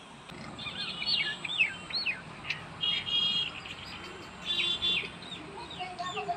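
Small birds chirping: a string of short high chirps and quick falling whistles, with two buzzier calls about three and five seconds in.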